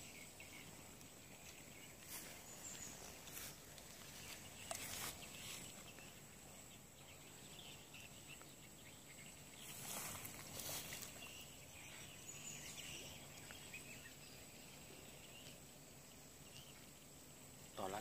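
Faint outdoor ambience at a pond: a steady low hiss with a thin high whine, broken by a few brief rustles about two, three and a half, five and ten seconds in.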